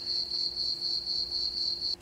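Electronic sound from a farm-animals sound puzzle toy: a single high, steady, lightly trilling tone lasting about two seconds that cuts off abruptly.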